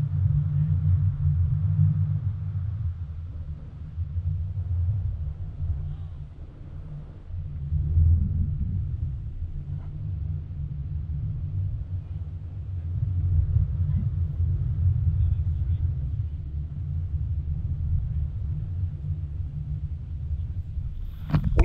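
Wind buffeting the microphone of a selfie-stick action camera as a tandem paraglider flies: a low, gusty rumble that swells and eases every few seconds.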